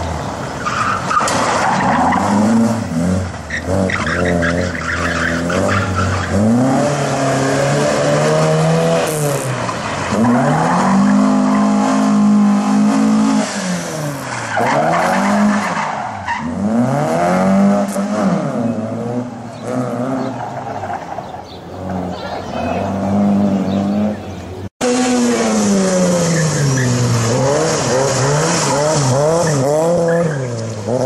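Classic Ford Escort Mk2 driven hard through a cone slalom, its engine revving up and falling back again and again as it is worked between the cones, with some tyre squeal. Near the end a cut brings in a second small car's engine revving up and down.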